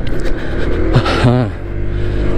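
Honda PCX scooter under way on the road: a steady low engine drone under wind and road noise, with a brief voice sound about a second in.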